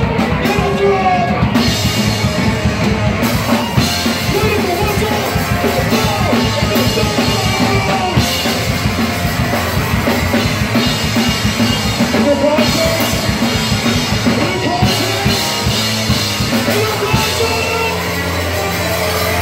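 Live band playing loud rock music with a drum kit driving it, dense and unbroken.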